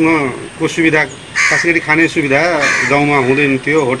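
A man speaking in continuous, loud talk.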